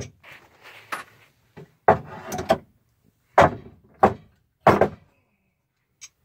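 A series of loud thumps and knocks on wood: a scuffle in the first second, then about six heavy knocks between about two and five seconds in, of wooden boards being knocked or stepped on in an attic.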